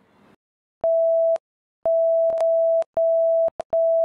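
A steady mid-pitched electronic test tone added in editing, the kind laid over colour bars, starting about a second in and cut into about five pieces of uneven length with dead silence between them, each switching on and off with a click.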